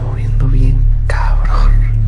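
A steady low droning music bed with a person whispering over it, the loudest whisper running from about one second in to near the end.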